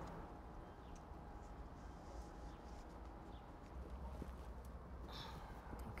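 Faint, scattered clicks and light creaks of a brass boiler shutoff valve being threaded by hand into a hole in a plastic barrel, over a low steady background rumble.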